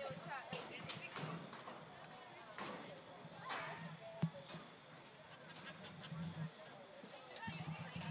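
Faint, distant voices of players calling across the field, with a few sharp knocks, the loudest about four seconds in.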